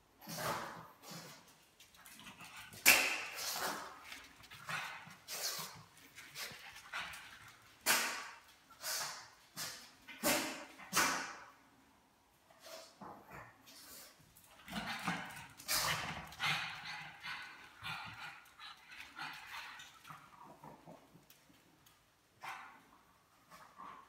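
Small black dog giving a string of short barks and yips with gaps between them, and whimpering in a denser stretch in the middle.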